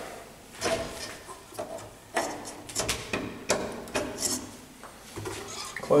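A string of short plastic clicks and knocks from hands handling the VESDA-E smoke detector: the power cable is plugged back in and the hinged front door is swung towards shut.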